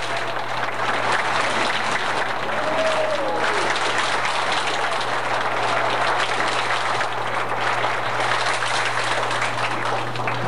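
Audience applauding steadily, a dense crackle of many hands clapping.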